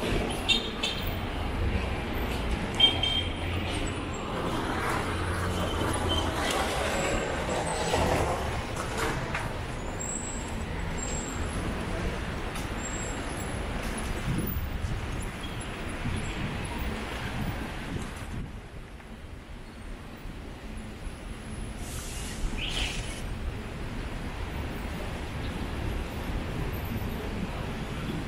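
Road traffic on a busy city street: vehicles passing close by, with a low engine rumble through the first several seconds that eases off later, and a quieter stretch a little past the middle.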